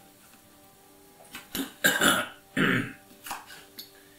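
A kitchen knife cutting a peeled cucumber on a wooden cutting board: a few short, sharp chops starting about a second in. In the middle come two loud throat-clearing sounds from a man.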